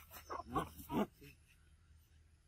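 Macaque vocalizing: three short calls in the first second, each bending up and down in pitch.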